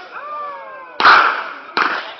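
Two sharp, loud bangs about three-quarters of a second apart, the first the louder, each with a short ringing tail, from a homemade PVC-tube airsoft launcher going off.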